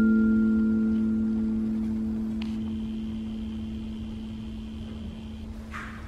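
A small handheld metal singing bowl ringing after a strike, its low hum slowly dying away with a few higher overtones. About two and a half seconds in, a light tap adds a faint high ring that fades near the end.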